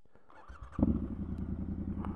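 Triumph Scrambler 1200 XE's parallel-twin engine starting up, catching a little under a second in after a brief rising whir, then idling steadily.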